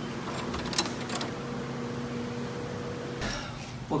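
Clicks from a hotel room's keycard door lock and handle about a second in, over a faint steady hum.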